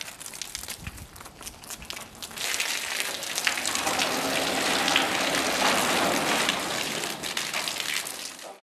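Garden hose spraying water onto a flower bed: light pattering at first, then from about two seconds in a louder, steady splashing hiss of the spray hitting plants and soil.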